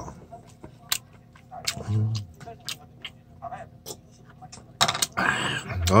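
A person chewing pig's trotters (jokbal) close to the microphone, with scattered wet mouth clicks and smacks. There is a short closed-mouth 'mm' about two seconds in and a loud breathy exhale with an 'ah' near the end.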